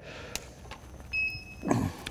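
A short, steady, high-pitched electronic beep lasting about half a second, about a second in, over faint background noise with a click near the start.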